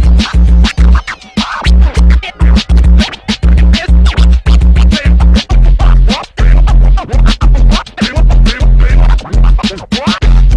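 Vinyl records being scratched on turntables over a hip-hop beat. The beat and samples cut in and out in rapid chops, with quick scratch strokes throughout.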